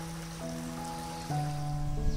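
Background music: soft, sustained notes that change chord a couple of times.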